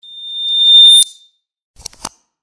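Sound effects of an animated subscribe-button overlay: a high-pitched electronic beep that swells for about a second and cuts off, then a quick double mouse click near the end.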